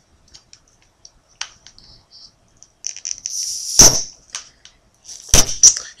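A bottle cap being prised off a lager bottle with a cigarette lighter used as a lever: small scraping clicks, then a pop with a short hiss of escaping gas about three and a half seconds in. Two sharp knocks follow near the end.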